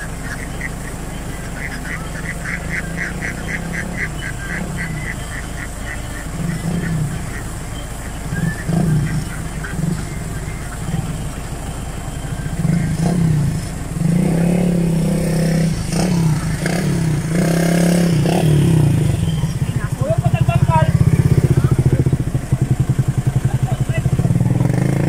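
A small motorcycle engine running, growing louder in the second half, mixed with the calls of a large flock of domestic ducks on the move.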